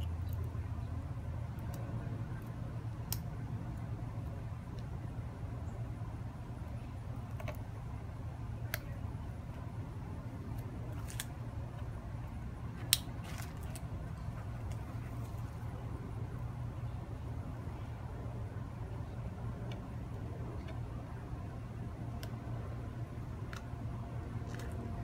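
Steady low rumble of road-paving machinery in the background. Over it come scattered small clicks and ticks, one sharper about 13 seconds in, as the whipping twine is handled and its end cut off with a small knife.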